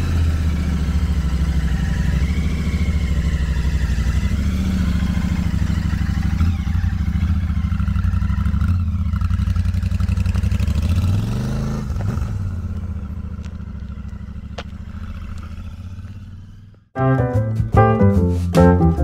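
Motorcycle engine running steadily, with a brief rise and fall in pitch about twelve seconds in, then fading away as the bike moves off. Music with distinct notes starts about a second before the end.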